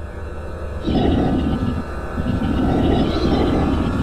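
Spooky intro soundtrack under a title card: a low steady drone, joined about a second in by a loud, grainy rumble that carries on to the end.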